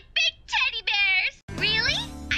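A woman's high-pitched cartoon voice making short wordless sounds, then one longer one; after a brief gap near the end, music comes in under a rising vocal.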